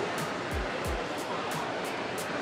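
Background music with a steady beat of low thumps and high ticks, over a steady noisy hiss of room ambience.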